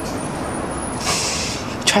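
Steady background traffic noise, with a short hiss about a second in.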